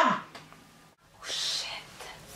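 A girl's shouted call trailing off, then, after a sudden cut, a breathy whisper lasting under a second.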